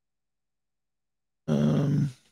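A man's short, low vocal grunt, about half a second long, near the end.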